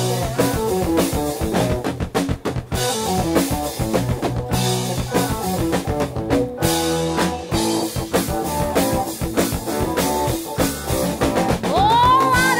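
Rock band playing an instrumental funk-rock riff: electric guitar, bass and drum kit, without vocals.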